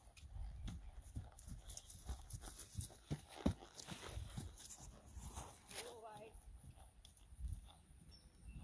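Hoofbeats of a young horse cantering over dry pasture turf, with one heavier thud about three and a half seconds in. A brief wavering human voice is heard about six seconds in.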